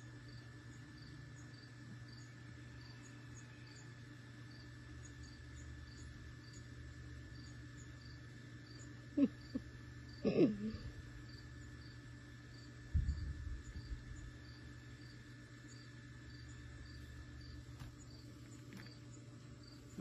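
Insects chirping in a steady, even rhythm over a faint low hum, with a couple of brief sounds just past the middle and a low bump a little later.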